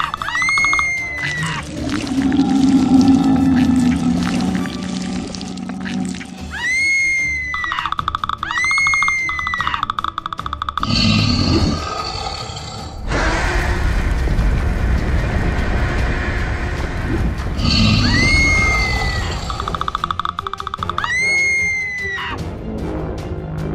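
Cartoon soundtrack of music with monster sound effects: high, shrill cries that rise and fall, coming in pairs several times. From about halfway there are low roars and a dense, steady rumbling noise.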